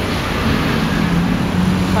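Busy city road traffic below an elevated walkway: a steady, loud rumble of car engines and tyres, with a low engine hum standing out in the second half.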